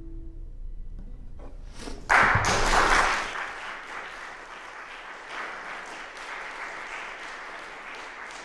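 The last ringing chord of a classical guitar dies away. Then audience applause breaks out about two seconds in, loudest at first and settling into steady clapping.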